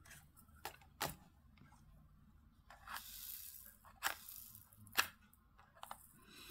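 Faint light clicks and taps of diamond painting tools, a drill pen and a plastic tray of resin drills, handled over the canvas, with a brief soft rustle about three seconds in.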